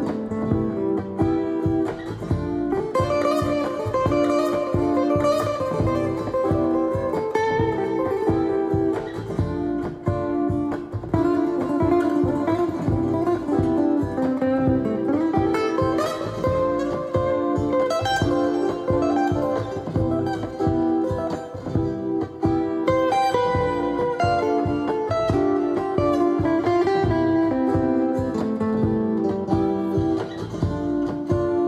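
Amplified guitar playing an unaccompanied jazz solo, a continuous run of plucked single notes and chords.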